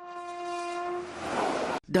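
A train horn sounding one steady note that stops about a second in, followed by the rushing noise of a train, growing louder and cutting off suddenly just before the end.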